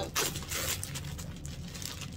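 Clear plastic garment bag being torn open and crinkled, with a sharp rip in the first half-second followed by softer rustling of the plastic.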